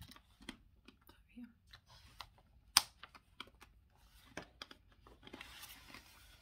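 Scattered small clicks and taps, with one sharp click about three seconds in, then paper rustling near the end as a paperback puzzle book is lifted and its pages flip.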